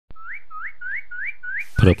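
A short click, then a whistled note sliding upward, repeated six times at about three a second, like a bird's call; a man's voice starts speaking over the last note.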